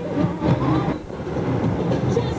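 Steady rumble of a moving vehicle heard from inside it, with road and engine noise.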